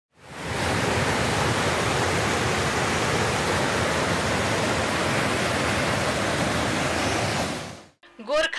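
A mountain stream rushing and splashing white over boulders in a steep cascade, a steady loud roar of water that fades in at the start and fades out near the end.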